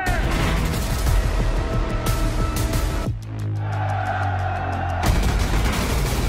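War film trailer soundtrack: dramatic music under a barrage of naval gunfire and blasts, easing about halfway through to a held low chord for a couple of seconds before the blasts return near the end.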